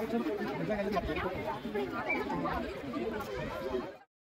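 People talking, several voices overlapping in casual chatter.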